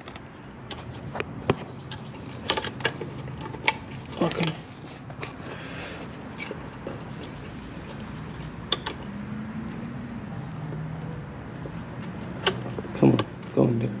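Scattered clicks and light knocks of hands working a plastic wiring connector into place on an engine, with brief muttering near the end.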